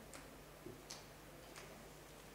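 Near silence: hall room tone with three faint, evenly spaced clicks.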